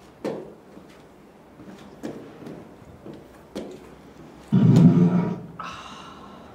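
A woman burping: a few short burps, then one long, loud, low burp about four and a half seconds in. A brief higher sound follows near the end.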